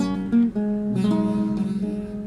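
Acoustic guitar music: single plucked notes follow one another every fraction of a second over a steady low note.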